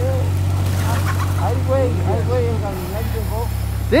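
A flock of gamefowl chickens clucking and calling, many short rising-and-falling calls over one another, over a steady low engine hum that drops in pitch a little under three seconds in.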